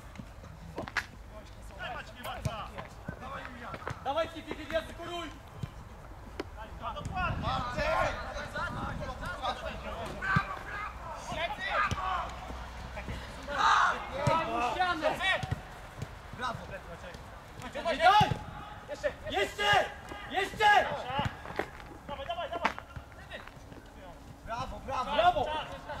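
Footballers' voices calling and shouting across the pitch during play, with a few sharp thuds of the ball being kicked.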